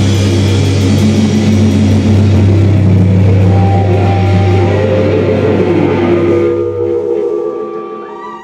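Live nu-metal band playing loud, with distorted guitars, bass and drums. About seven seconds in the drums and bass stop, leaving a chord ringing out and fading as the song ends.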